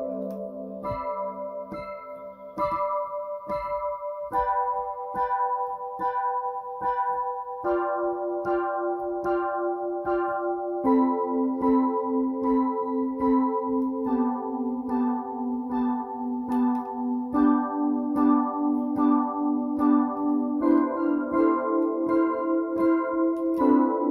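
Synthesizer music with an electric-piano-like keyboard sound playing repeated chords in an even pulse of about two notes a second. The harmony changes every three to four seconds.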